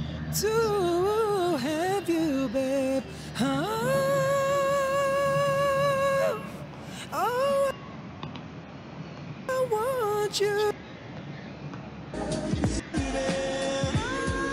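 Played-back recording of a male voice singing slow R&B phrases with vibrato, climbing to a long high held note in the middle, then shorter sung phrases with pauses between. A short laugh comes near the end.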